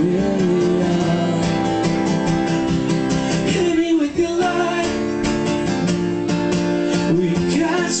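Live acoustic guitar strummed steadily under a male voice singing a sustained melody, with a brief dip about four seconds in.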